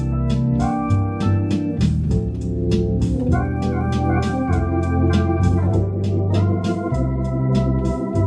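Hammond console organ playing sustained chords on the manual over pedal bass notes that change every second or so, with a steady light ticking beat about four times a second.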